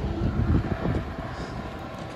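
Truck-mounted crane's engine running as a low, steady rumble, with wind buffeting the microphone.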